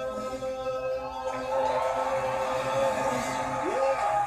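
Music with sustained held notes that swells and grows brighter about a second and a half in, with a voice sliding up and down in pitch near the end.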